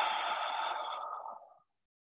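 A long audible breath out through the mouth, the exhale phase of bunny breath (three short sniffed inhales through the nose, then one breath out the mouth). It fades away and ends about a second and a half in.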